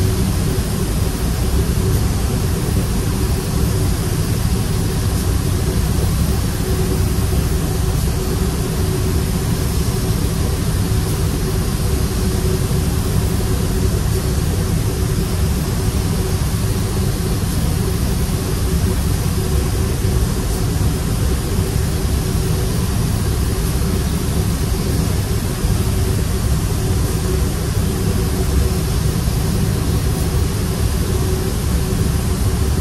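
Steady roar of a paint booth's ventilation airflow with a steady hum, mixed with the hiss of a spray gun as clear coat is sprayed onto a tailgate.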